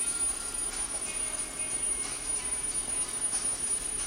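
Hobby servo motors of a modular snake robot whirring in short spurts as the body bends from side to side in a slithering gait, over a steady thin high-pitched whine.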